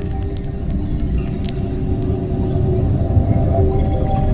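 Ambient music: a slow drone of several sustained tones over a low, rumbling noise bed, with a few faint clicks and a brief high hiss.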